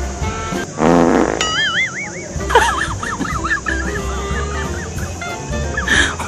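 Background music, then about a second in a short, loud wet fart sound effect with a rapid buzzy rattle. It is followed by warbling, wavering comic tones over the music.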